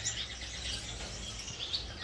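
Gouldian finches chirping in an aviary cage: many short, high calls from several birds overlapping.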